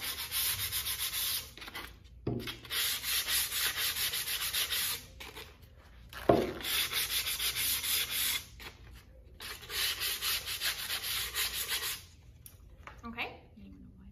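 Sandpaper on a plain wooden sign board, rubbed by hand in quick back-and-forth strokes: light sanding of the faces and edges before painting, in runs of two or three seconds with short pauses. A single sharp knock about six seconds in is the loudest sound, and the sanding dies away near the end.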